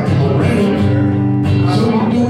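Acoustic guitar strummed in a steady rhythm, chords ringing, with no singing.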